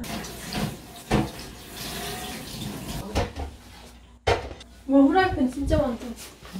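Kitchen tap running into the sink for about the first three seconds, with a few sharp knocks of dishes or cupboard. Voices speak near the end.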